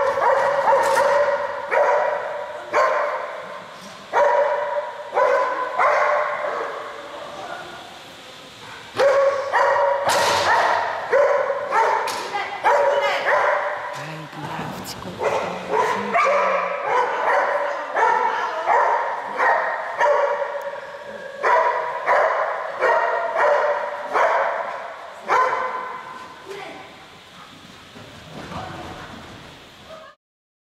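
A dog barking repeatedly, about once a second, while running an agility course, each bark echoing in a large indoor hall.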